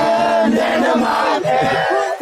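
A group of people chanting and shouting together, with long held calls.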